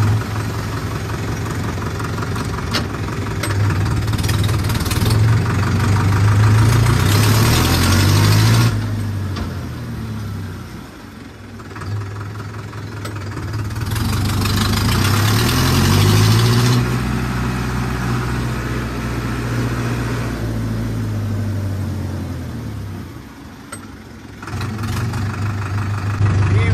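Powertrac tractor's diesel engine running under load, revving up twice, about six and fourteen seconds in, and easing back between. It drops quieter briefly around eleven seconds and again near the end.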